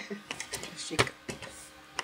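A few short, separate clicks and rustles from the thick cotton crochet piece and its hook being handled, the loudest a knock about a second in.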